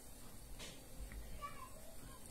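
A pause in the room: faint room tone, with one faint, short, high-pitched call that slides in pitch about one and a half seconds in.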